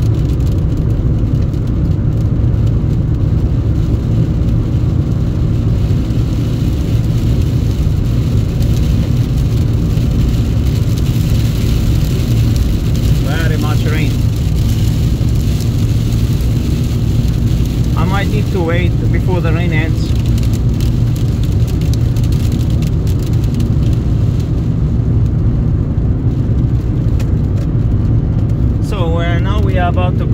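Steady road noise inside a car driving at highway speed on a wet road: engine and tyres with a constant low drone. A voice is heard briefly a few times, about halfway through and near the end.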